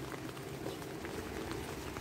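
Light rain falling, a steady soft patter of drops.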